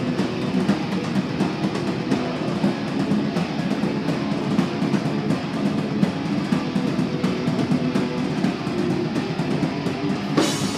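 Live heavy rock band playing loud: distorted electric guitars, bass guitar and a drum kit with fast, constant cymbal and drum hits.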